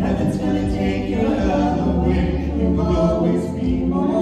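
A vocal trio of two women and a man singing in harmony into handheld microphones, with long held notes.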